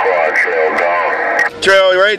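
Voice received over a President HR2510 radio, faint and narrow under steady static; about one and a half seconds in the signal drops briefly and a much stronger, clearer voice comes in.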